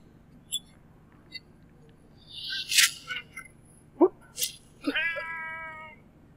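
Film sound effects: a whoosh ending in a sharp hit, then another hit, a short rising vocal sound, and a drawn-out cry of about a second near the end, its pitch falling slightly.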